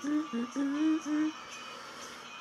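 A woman humming a tune with closed lips, a few short held notes that stop a little over halfway through; faint pop music plays underneath.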